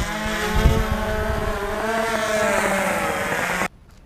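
DJI Phantom 2 quadcopter hovering close by, its rotors giving a steady buzz that wavers slowly up and down in pitch. The buzz cuts off suddenly near the end, leaving only faint background.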